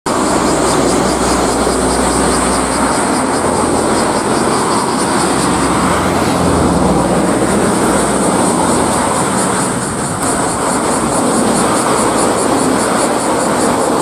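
Loud, steady outdoor rushing noise with a high, rapidly pulsing buzz running above it, and a deeper rumble for the first few seconds.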